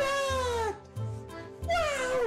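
An animal's call heard twice: two drawn-out calls, each falling in pitch, the second starting near the end.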